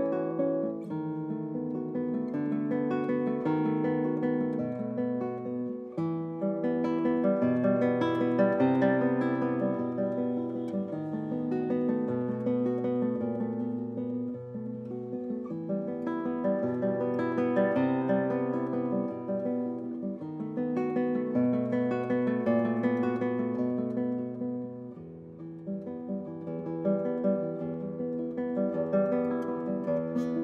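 Solo classical guitar played fingerstyle, nylon strings plucked in a continuous flowing pattern over a moving bass line. It softens briefly about five seconds before the end, then carries on.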